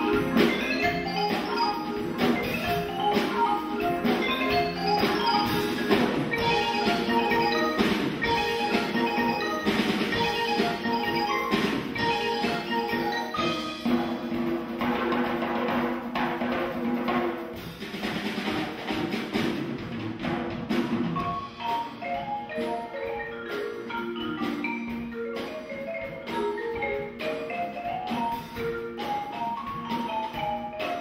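Percussion ensemble playing a funk arrangement, with marimbas carrying quick melodic lines over drum kit and hand drum. A loud, dense passage thins to a lighter, quieter mallet passage about eighteen seconds in.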